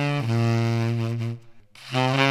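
Tenor saxophone holding a long low note that fades out a little past a second in. After a brief gap the playing starts again at the very end.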